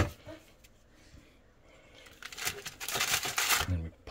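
Aluminium foil crinkling and rustling for about a second and a half, starting about two seconds in, as a flour-coated chicken piece is pressed into a foil-lined air fryer basket. A short click comes at the very start.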